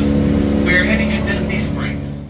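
River-cruise boat's engine running with a steady low drone, with people talking over it.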